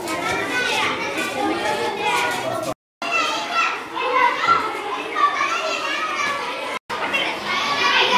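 A crowd of schoolchildren chattering and calling out at once, a dense babble of many young voices. It cuts out briefly twice.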